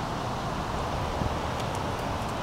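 Chevrolet Impala engine idling steadily in park, a low even rumble.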